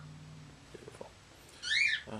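Pet bird giving one short, loud chirp that rises and falls in pitch near the end.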